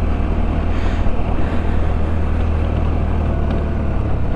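Sinnis Terrain 125's single-cylinder engine running steadily at low speed, with a noisy hiss of wind and gravel over it.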